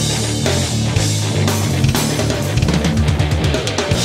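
Rock band playing an instrumental passage: electric guitar over a drum kit, with a fast run of drum hits near the end leading into the next section.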